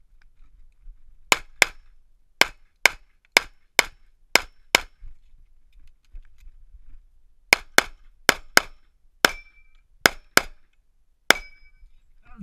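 Sixteen pistol shots from a Sig Sauer 1911, fired mostly in quick pairs about a third of a second apart, with a pause of nearly three seconds after the eighth shot.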